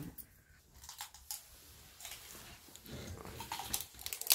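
Faint, scattered clicks and crunches of people eating crisp pani puri and handling dishes at the table.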